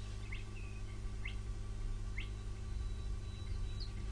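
Faint bird chirps, short rising calls about once a second, over a steady low hum.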